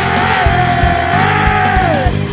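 Hardcore punk band playing: one long yelled vocal note, dropping in pitch at the end, over distorted guitar, bass and drums.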